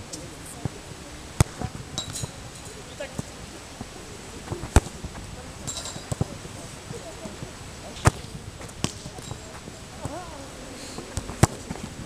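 A football being kicked on an outdoor pitch: several sharp thuds, the loudest about one and a half, five and eight seconds in, with faint distant voices between them.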